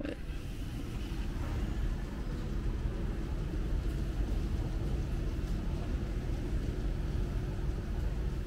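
Steady low outdoor city rumble with a faint constant hum, the background noise of traffic and machinery around an urban building.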